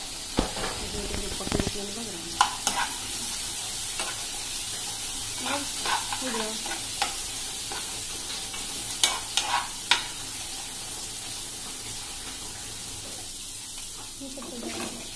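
Chickpeas sizzling as they fry in a kadhai, with a steady hiss, while a spoon stirs them. The spoon scrapes and knocks against the pan in scattered clicks, the sharpest about two and a half seconds in and again around nine to ten seconds in.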